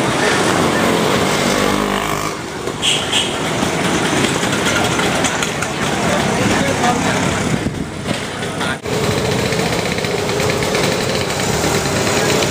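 Busy city street ambience: engines of passing motor traffic mixed with the voices of people nearby.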